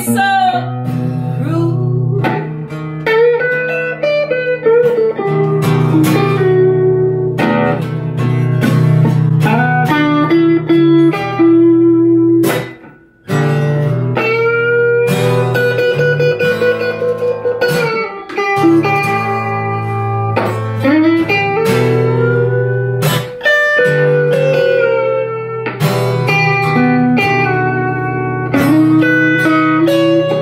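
Instrumental guitar break: a sunburst Stratocaster-style electric guitar plays a lead line with bent notes over acoustic guitar chords. Both drop out for a moment about halfway through, then carry on.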